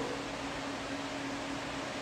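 Steady room noise: an even hiss with a faint, steady low hum.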